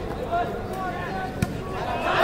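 Crowd chatter at a volleyball match, with one sharp smack of the volleyball being hit about one and a half seconds in.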